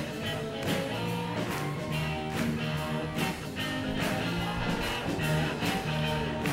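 A live band playing a rock-and-roll groove: a drum kit keeps a steady beat about twice a second under guitar.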